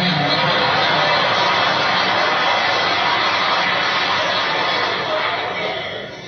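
Audience applauding and cheering in an archival speech recording, played back through television speakers: a steady, even clatter that eases off slightly near the end.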